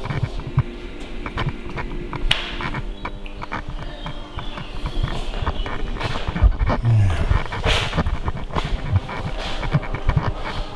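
Irregular crackling and popping from a faulty camera microphone, over a steady low electrical hum.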